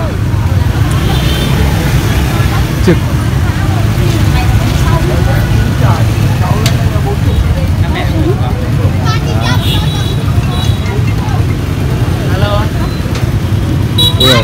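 Steady low rumble of outdoor street-market background noise, with faint scattered voices.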